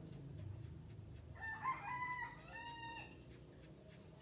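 A rooster crowing once, faint, starting a little over a second in and lasting about two seconds, over a low steady hum.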